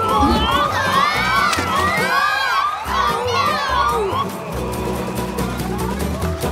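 Several cartoon voices whooping and shouting in a quick run of rising-and-falling cries, about three a second, over background music; the cries die away about four seconds in.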